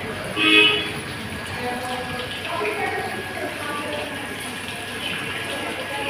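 Indistinct background voices of people talking, with one short, loud horn toot about half a second in.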